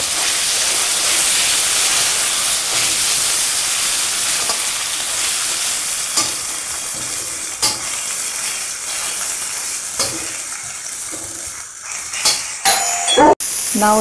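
Onion, tomato, garlic, ginger and dry coconut sizzling in oil in a steel kadai as they fry toward golden brown, stirred with a metal slotted spatula that clicks and scrapes against the pan now and then. The sound cuts out for an instant near the end.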